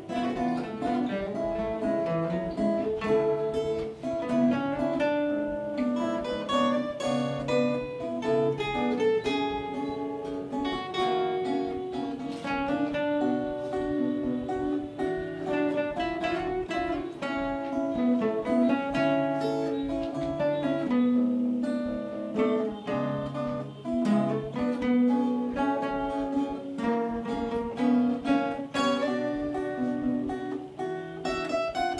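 Three acoustic guitars playing a piece together: a stream of plucked melody notes over picked chords, continuous throughout.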